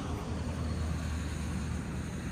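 Outdoor background noise: a steady low rumble.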